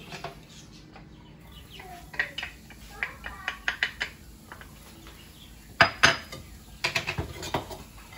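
Kitchenware clinking and knocking: a small glass bowl and utensils tapping against a cast-iron skillet and the counter as chopped garlic is tipped into the oiled pan. The sharpest knocks come about six seconds in, with a short run of lighter clinks about a second later.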